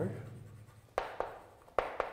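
Chalk writing on a blackboard: three sharp taps of the chalk striking the board, two about a second in and one near the end, over a quiet room.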